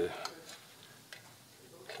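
A few faint, sparse clicks of a screwdriver working the pre-loosened fasteners on the end of a stainless steel muffler.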